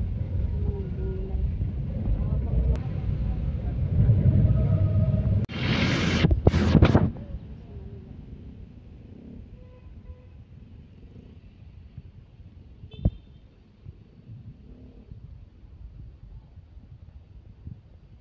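Low steady road rumble heard from inside a moving vehicle, with two loud rushing bursts about six and seven seconds in. Then a much quieter open street with faint voices and a single sharp click about two-thirds of the way through.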